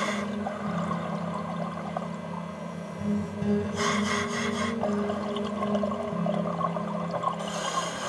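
Slow background music of sustained low tones that shift in pitch every second or two. A brief rushing hiss of a diver's exhaled bubbles comes about four seconds in.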